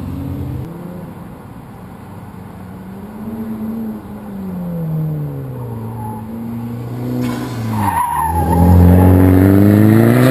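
A car's engine running an autocross course, its pitch rising and falling as it speeds up and slows for the cones. About eight seconds in there is a brief tyre squeal, then the engine climbs hard and is loudest as the car comes closest.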